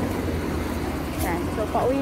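A car going by on the road, a steady low rumble of engine and tyres. A woman's voice starts near the end.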